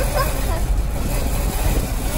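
Steady wind rush and road noise through an open car window while the car is moving.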